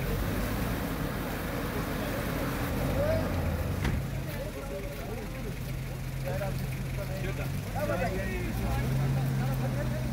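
A vehicle engine running with a steady low hum that grows stronger in the second half, with people's voices talking faintly over it.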